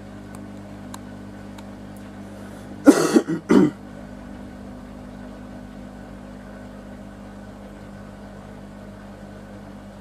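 Samsung WW90K5410UW front-loading washing machine running at the start of a Daily Wash 40 cycle: a steady hum with a few faint clicks as the drum turns. About three seconds in, a person coughs loudly, twice in quick succession.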